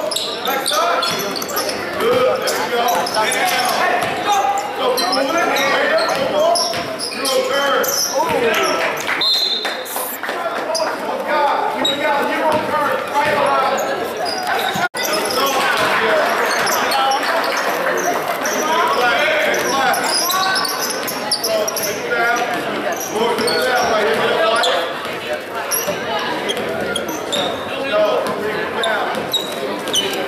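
A basketball dribbling on a gym court amid crowd chatter and shouting, echoing in a large hall. The sound cuts out briefly about halfway through.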